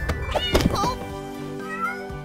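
Cartoon kitten meowing briefly in the first second, over background music.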